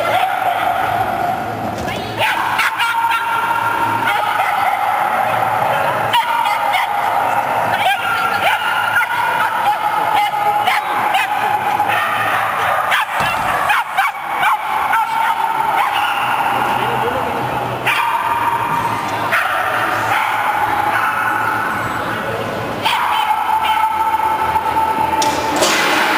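Small terrier barking and yipping over and over, with whining, as it runs an agility course.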